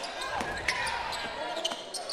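A basketball bounces on a hardwood court during play, giving a few short knocks over the steady murmur of an arena crowd.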